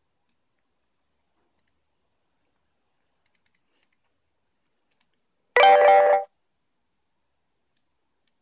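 Faint computer-mouse clicks, then a short, loud chime of several tones about five and a half seconds in.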